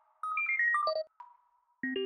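Synthesized computer bleeps: a quick run of short electronic tones stepping downward in pitch, then after a brief pause a second run climbing upward, a data-readout effect for on-screen text being typed.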